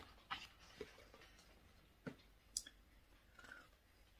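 Near silence, with a few faint clicks and a soft rustle from a picture book being opened and its pages handled.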